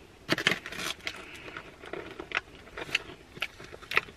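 Crunching and chewing of a small crunchy cinnamon cookie, heard up close as irregular crackly clicks, with some crinkling of a foil-lined snack bag.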